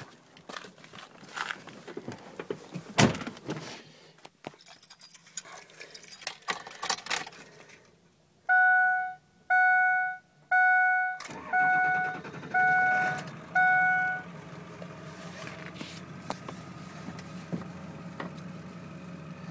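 Clicks and rustles of someone getting into a Ford F-250's cab, then six warning chimes from the dash, about one a second: the seatbelt reminder at key-on. About three seconds into the chimes a steady low rumble sets in, the 7.3-liter diesel V8 idling, and the last three chimes sound quieter over it.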